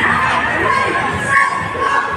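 Loud, steady din of a crowd in a large hall, many voices and shouts overlapping.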